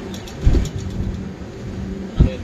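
Indian Railways express train running at speed, heard from an open coach doorway: a steady rolling rumble with a steady hum. A heavy low thump comes about half a second in, with faint rapid clicks during the first second.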